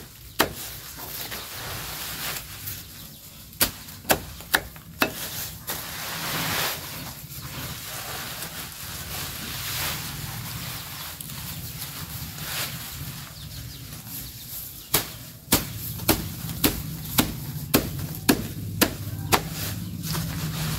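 A long chopping knife cutting through a bundle of fresh green cattle fodder. There are a few chops about four seconds in, then rustling of leaves as the bundle is gathered. Near the end comes a steady run of chops, about two a second.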